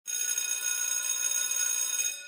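Electric school bell ringing continuously: a loud, high, metallic ring with a fast flutter that starts abruptly.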